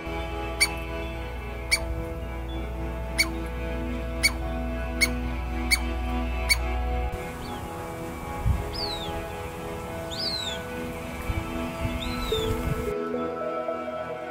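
Douglas squirrel giving seven sharp, pitch-dropping calls, about one a second, through the first half. After that come a few thin, falling high bird calls. Gentle background music plays throughout.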